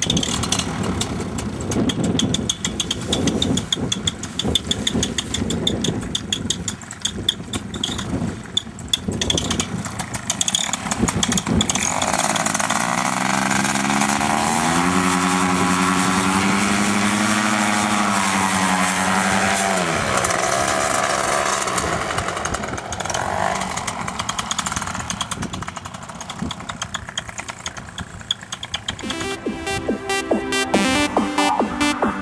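Paramotor engine with wind buffeting the microphone. About twelve seconds in, the engine's pitch rises as it is throttled up for the launch run. It holds a steady high note for several seconds, then falls away as the throttle is cut back about twenty seconds in. Music starts near the end.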